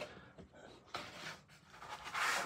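Sheets of heavy 300 g Baohong cotton watercolor paper being leafed through by hand, giving a few faint scrapes as the sheets slide against each other.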